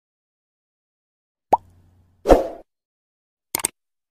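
Animated-intro sound effects. There is a short falling plop about one and a half seconds in, then a louder, half-second burst with a low thump, and near the end a quick cluster of sharp clicks that goes with the on-screen subscribe-button click.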